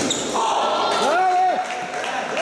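A sharp knock right at the start, then people's voices calling out in a large hall, with a drawn-out rising-and-falling call about a second in.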